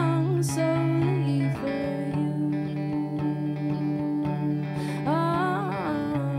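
A woman singing a slow song, accompanying herself on electric guitar. Her voice sings for about the first second, the guitar chord changes and rings on while she pauses, and she sings again near the end.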